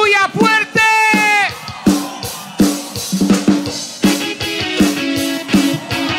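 Live band music: a drum kit keeps a steady beat of kick and snare under guitar and sustained notes. Over the first second and a half a voice calls out, sliding up and down in pitch, and then the band plays on without it.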